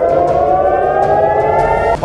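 Civil defence air-raid siren wailing, its pitch rising steadily: a rocket-alert siren in Israel warning of an incoming missile.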